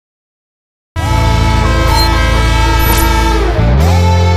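Silence, then about a second in a loud title jingle starts suddenly: a sustained, horn-like chord of steady tones over music, with a rising sweep near the end.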